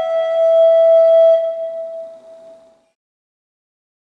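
Recorder holding a long, steady final note that fades away over about a second and a half, ending the piece.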